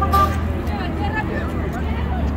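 Outdoor chatter of several people, voices overlapping, over a steady low rumble of traffic.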